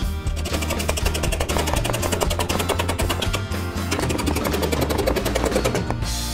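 A plastic toy hammer tapping rapidly on a toy workbench bolt, about ten even taps a second, over background music.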